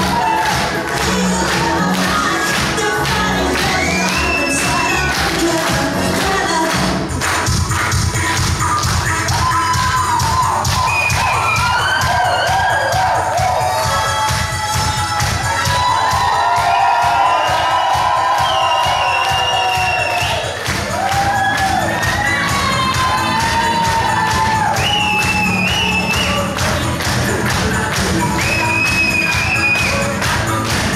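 Recorded dance music with a steady beat and a gliding melody line, played loud through a hall's sound system. A crowd claps and cheers along.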